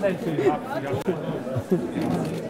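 Restaurant guests chatting at their tables: many voices talking at once, none standing out, in the reverberant murmur of a large dining room.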